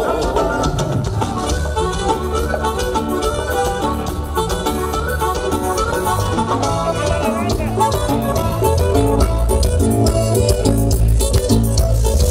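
Mexican regional band music playing steadily, with held melody notes over a continuous bass line, for a dance.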